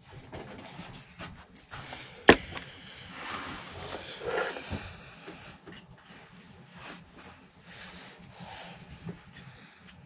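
Close handling noises at the microphone: a single sharp click about two seconds in, then a few seconds of rustling and shuffling.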